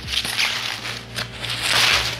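Plastic bubble wrap crinkling and rustling as hands grip and pull it, growing loudest near the end.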